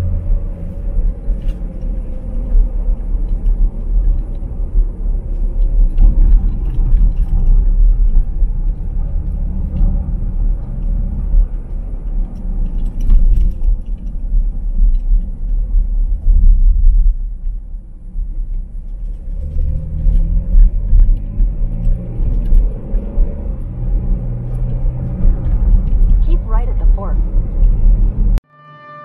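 Car interior road and engine rumble while driving at highway speed, heavy and low-pitched. It dips for a moment a little past halfway as the car slows through a toll plaza, then builds again as it speeds up.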